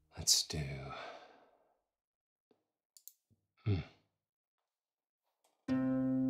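A man's loud, breathy sigh, then a short voiced sound a few seconds later. Near the end a sampled concert harp chord from the Vienna Symphonic Library Synchron Harp, played from a keyboard, starts ringing.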